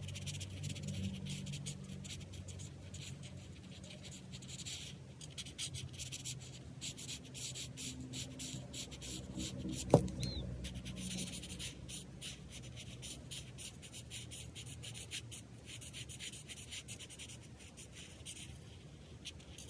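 Felt tip of an alcohol marker scratching across paper in quick back-and-forth strokes as it colors in an area, with brief pauses between runs. About halfway through, a single sharp tap.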